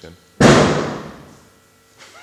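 A single sudden loud bang about half a second in, dying away over about a second.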